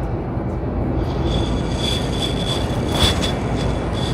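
Steady grocery-store room noise, a low hum, with a thin high-pitched squeal that comes and goes from about a second in, and a short click about three seconds in.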